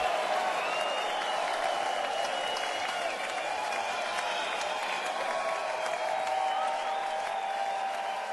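Audience applauding, with crowd voices and cheers, right after a live song ends.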